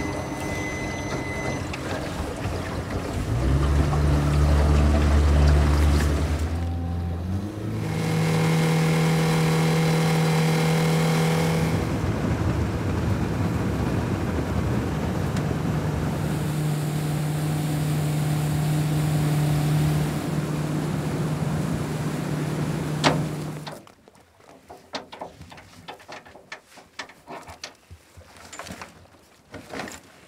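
Jet boat's Yamaha 65 outboard running under way: it revs up a few seconds in, shifts pitch a couple of times, then holds a steady cruise. It cuts off suddenly near the end, leaving only faint clicks and knocks.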